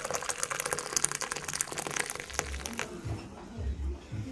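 Water running or being poured: a dense, crackling splash that stops about three seconds in, followed by a few soft low thumps.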